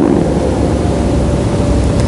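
Steady, fairly loud noise: a low rumble with hiss underneath, the recording's own background noise.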